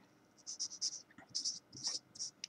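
Felt-tip marker writing on paper: several short, scratchy strokes.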